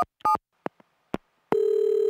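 Telephone sound effect: a last touch-tone (DTMF) digit beep and two clicks, then about a second and a half in a steady telephone ringing tone that lasts just over a second.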